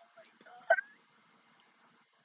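A woman's short wordless vocal sound: a faint pitch-gliding hum, then one brief sharp voiced burst about three quarters of a second in.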